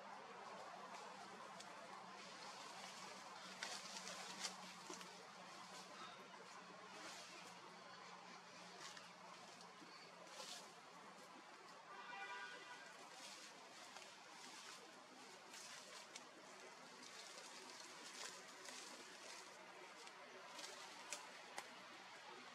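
Near silence: faint outdoor forest ambience with a soft hiss and scattered light clicks, and one short pitched animal call about halfway through.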